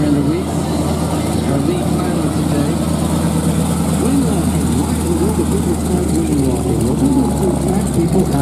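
A biplane's radial engine running at a steady low idle while the plane taxis, propeller turning.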